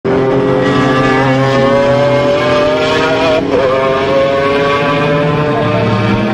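Sports car engine accelerating hard, its pitch climbing steadily. It drops at a gear change about three and a half seconds in, then climbs again.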